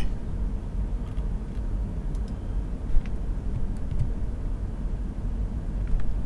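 Steady low background rumble, with a few faint clicks of computer keys being typed.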